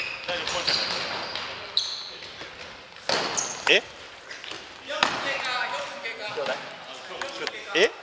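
Futsal ball kicked and bouncing on a gymnasium's wooden floor: several sharp thuds, the loudest about three and five seconds in.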